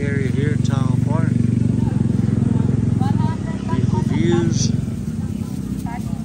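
A small engine running close by, loud for about three seconds, dipping briefly, swelling again and then dropping back, with people talking over it.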